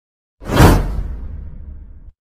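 Whoosh sound effect for an animated intro graphic: a sudden loud swoosh with a deep rumble about half a second in, fading away over the next second and a half.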